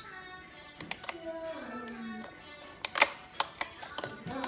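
Background music with held notes, overlaid by a few sharp clicks and snaps, the loudest about three seconds in, from fingers prying open a cardboard advent calendar door.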